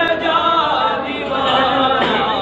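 A man singing a Sindhi naat without instruments, holding long, wavering notes.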